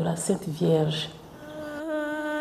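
A woman speaks briefly, then about one and a half seconds in a girl's voice begins singing a long held note, unaccompanied.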